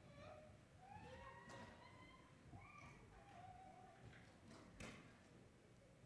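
Near silence with faint, distant children's voices chattering off the microphone, and a single knock about five seconds in.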